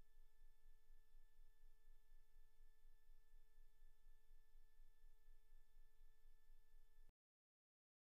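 Near silence: a faint steady electronic hum, which cuts to total silence about seven seconds in.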